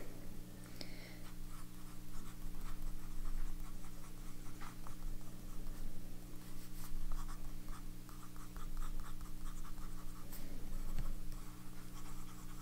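Fountain pen nib scratching across notebook paper in short, irregular strokes as a name and loops are written out, over a faint steady low hum.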